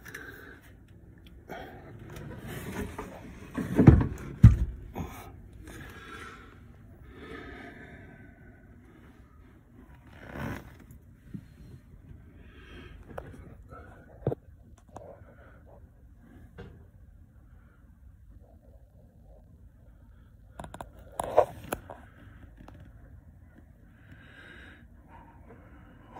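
Hands working a boat's lead-acid battery loose: scattered knocks, clicks and scrapes at the terminals and clamp, with two loud thumps about four seconds in. A man's breaths and low mutters come between.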